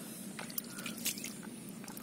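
Hands squelching through wet mud and muddy water in a hole, with irregular wet squishes and small clicks.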